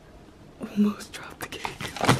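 A person whispering under their breath, mixed with a run of sharp clicks and knocks from movement close to the microphone; the loudest moment comes just under a second in.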